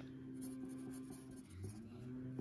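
Wooden pencil writing on paper: faint, light scratching of the graphite as figures are written, over a low steady hum.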